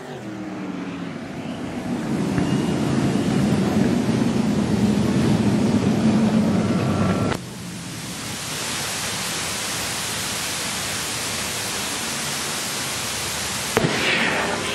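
Sprintcar engines running on a dirt track, growing louder over the first few seconds, then cut off suddenly about seven seconds in. A steady rushing noise follows.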